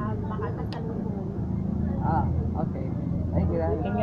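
A woman talking, over a steady low rumble in the background.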